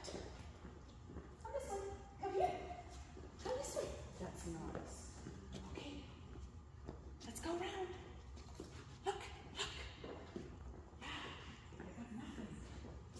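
Quiet, indistinct talking in bursts, with a few light taps.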